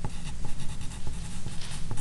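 A pen writing on paper, a quick run of short strokes as a word is written out.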